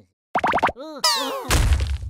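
Cartoon bubble sound effects: a few quick rising, bouncing bloops and plops start about a third of a second in, followed about a second in by a cascade of falling tones. A low rumble comes in near the end.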